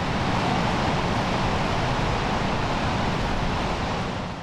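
Steady rush of wind buffeting the microphone, with sea surf washing behind it.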